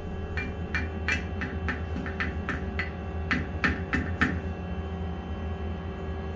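A hammer tapping the face of a metal waterjet blank clamped in a four-jaw lathe chuck, about a dozen taps at two to three a second that stop about four seconds in. The taps are seating the part against a spacing ring behind it.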